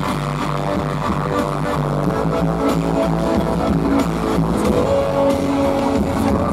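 A live band playing a Thai pop-rock song through a stage PA, with drums, bass and keyboard parts, loud and steady, and little sign of singing.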